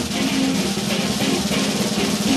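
Rock music: a band playing an instrumental passage, with distorted electric guitar over drums.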